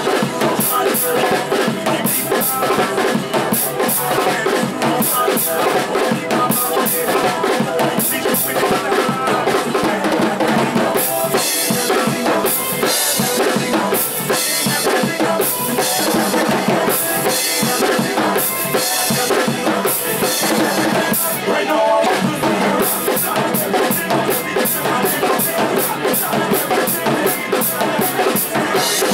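Drum kit played to a soca groove, with kick, snare, rimshots and cymbals, over the recorded backing track. The bright cymbal strokes are heavier in the middle stretch.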